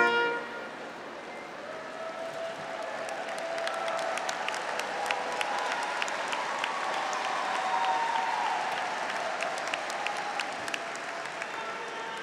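Large crowd in an arena applauding and cheering, the clapping swelling over the first several seconds and dying down near the end. A brass chord breaks off at the very start.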